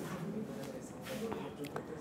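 Faint talking in a small room, with a few light clicks.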